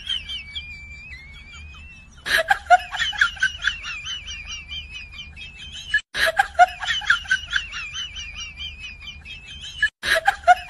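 A high-pitched, sped-up giggling sound effect. It runs faintly at first, comes in loud about two seconds in, and starts over about every four seconds, like a loop.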